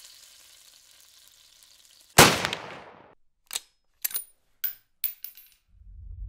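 Intro sound effects: one loud gunshot-like bang about two seconds in, its tail dying away over about a second, then five light metallic tinks about half a second apart. A low rumble starts near the end.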